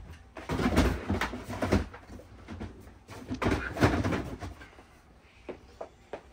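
Plastic storage tote being slid back onto a shelf: two bouts of scraping and knocking, then a couple of light clicks near the end.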